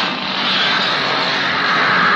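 Chainsaw engine running hard, a loud, dense buzzing rasp from a film trailer's soundtrack. A higher cry comes in over it in the last second.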